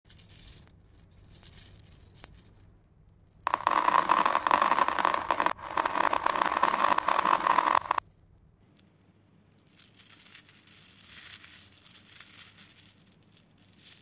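Small plastic heart-shaped beads poured and jostled in cupped hands, clattering against one another. Faint scattered rattling at first, then a loud dense clatter for about four seconds with a brief break in the middle, then softer trickling rattles until another loud pour right at the end.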